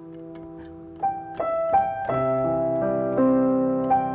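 Piano sound played on a keyboard, solo: held notes fade for about a second, then a new phrase of single notes and chords is struck from about a second in.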